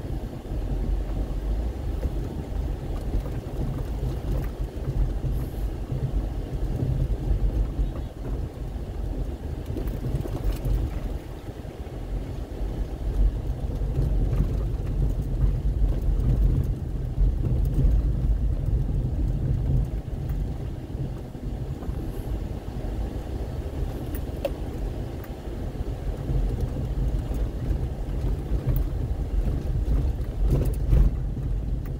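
Inside a car cabin while driving on an unpaved dirt road: a steady low rumble of engine and tyres that swells and eases a little, with a few faint clicks.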